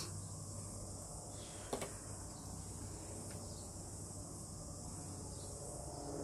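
Steady high-pitched chirring of insects, with one soft click a little under two seconds in.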